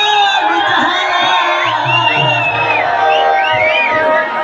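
Live alkap folk-band music: sustained instrumental tones with a high, sliding melody line, and audience noise underneath.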